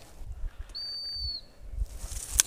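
A single short, steady blast on a dog-training whistle, high-pitched and dipping slightly in pitch as it ends.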